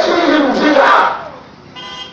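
A man's loud shouted call, breaking off about a second in, with a brief voice again just before the end.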